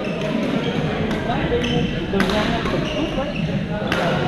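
Badminton rackets striking shuttlecocks: several sharp cracks at uneven intervals, over a steady murmur of players' voices.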